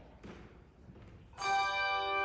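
Handbell choir striking a chord together about a second and a half in, many bells sounding at once and ringing on. Before it there is only a faint rustle.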